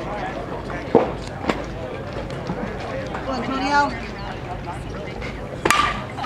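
A metal baseball bat hits a pitched ball near the end: one sharp crack with a short ringing ping. Two sharp knocks come earlier, about a second in, and spectators' voices are heard throughout.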